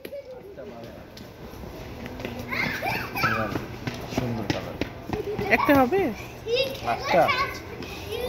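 A young child's high voice calling out and chattering in short phrases, three or four times, over a steady low background hum.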